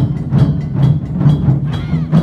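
Large Japanese taiko drum ensemble beating in unison, a steady pulse of about two strokes a second on big barrel drums.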